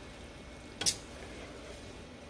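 Sliced steak, peppers and onions sizzling in a stainless skillet as they are stirred with a wooden spatula, with one sharp knock a little before halfway through as the spatula strikes the pan.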